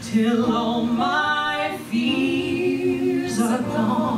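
A small group of women singing a song together into handheld microphones, with long held notes.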